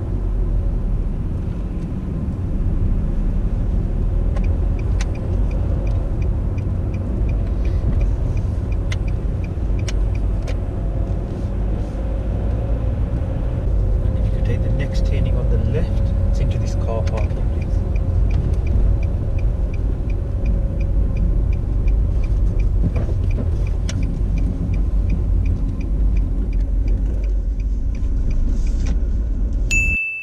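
Car engine and road noise heard from inside the cabin while driving: a steady low rumble. A faint, regular ticking of the indicator runs for several seconds near the start and again through the second half.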